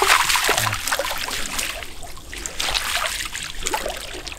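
Water splashing and trickling off a mesh fish trap as it is hauled up out of a flooded field, heaviest in the first second.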